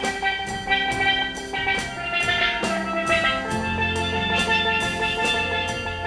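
Live band playing an instrumental piece on electric guitar, keyboard, bass guitar and drum kit, with a steady drum-and-cymbal beat. A low bass note comes in about halfway through.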